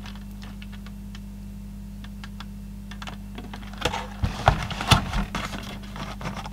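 Handling of an opened plastic calculator case and its circuit board: faint clicks and taps for the first few seconds, then a cluster of louder plastic clatters and knocks about four seconds in as the case halves are moved, over a steady low hum.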